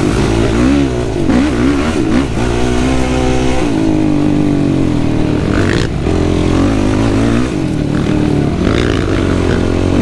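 Yamaha YFZ450R quad's single-cylinder four-stroke engine being ridden, its revs rising and falling again and again with the throttle, holding steadier for a few seconds in the middle. The engine is new and on its break-in ride.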